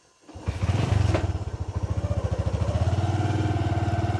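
Small moto-taxi motorcycle engine being kick-started, catching about a third of a second in and then running with a rapid, even beat. Its pitch rises a little past the middle.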